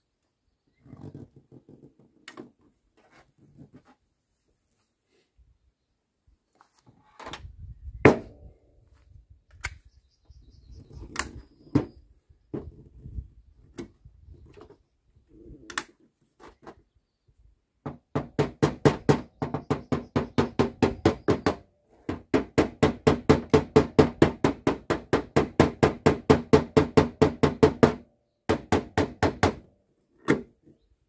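Fast, evenly spaced taps of a mallet on the sheet-metal front wing of a Volvo V70, several a second, in three runs over the last twelve seconds, while a suction-cup dent puller holds the panel: knocking out a dent. Before that, scattered knocks on the panel, one of them loud about eight seconds in.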